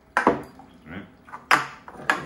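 Hard plastic and metal parts of Wacaco portable espresso makers knocking and clicking as they are handled and set down on a stone countertop: two sharp knocks, one just after the start and one about a second and a half in, with a few lighter clicks between.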